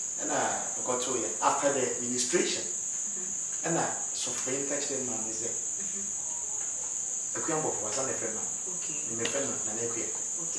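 A man's voice in snatches, loudest in the first couple of seconds, over a constant high-pitched whine that runs unbroken throughout.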